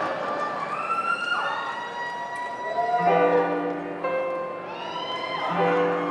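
Symphony orchestra playing sustained, swelling chords, with sliding lines early on and a fuller chord coming in about three seconds in and again near the end.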